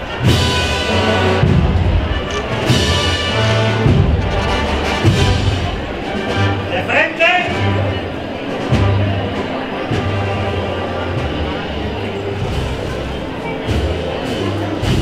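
A Spanish wind band (banda de música) playing a processional march, with low held brass notes and regular drum strokes.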